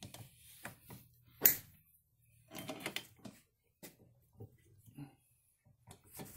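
Scattered clicks and knocks of metal tools and cast-metal transaxle parts being handled as the two halves of a Peerless 2338 transaxle case are fitted back together, with one sharp click about a second and a half in.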